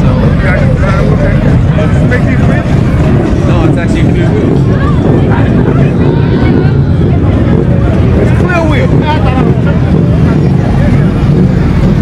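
Motorcycle engines running with a steady low rumble under crowd chatter.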